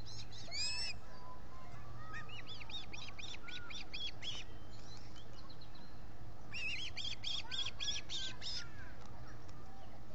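Ospreys calling: a brief burst of high whistled chirps, then two runs of short, quick, repeated chirps, each lasting about two seconds, starting about two and six and a half seconds in.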